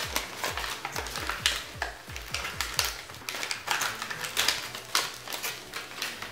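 Crinkling and clicking of packaging being handled while items are unwrapped, with many small sharp crackles throughout. A low thud repeats evenly about three times a second underneath for the first half, then stops.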